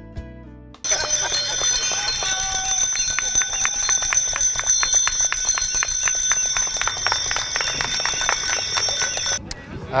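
Many bicycle bells ringing at once in a continuous jangling chorus, starting about a second in and stopping abruptly just before the end.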